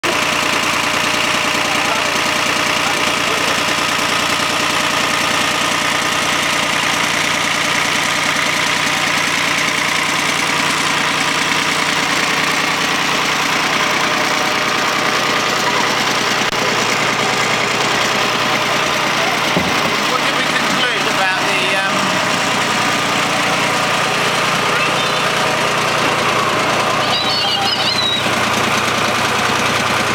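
Yanmar YM1510D compact tractor's diesel engine running steadily, turning a home-made apple scratter through its power take-off. The scratter is a spinning drum with screw heads as cutters, and it is shredding apples.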